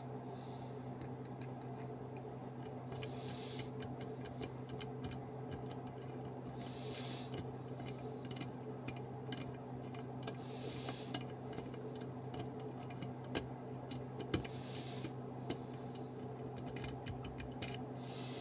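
Light metallic clicks and ticks, irregular and scattered, from a BKS key being turned in a BKS 8000 euro-profile cylinder, its cam rotating. A steady low hum runs underneath.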